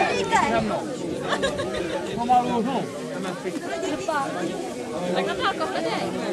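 Several children and adults chattering at once, their voices overlapping, with no single speaker standing out.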